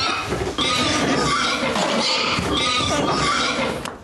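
A woman screaming and shrieking loudly, one cry after another, with a brief break about half a second in and a fall-off just before the end.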